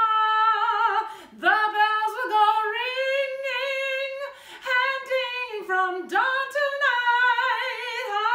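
A woman singing solo and unaccompanied, in long held notes with vibrato, with three short breaks for breath.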